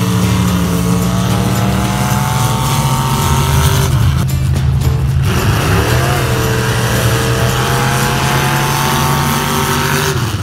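Two pickup trucks' engines revved high and held, dropping away briefly about four seconds in, then climbing steadily in pitch as the trucks accelerate down the track.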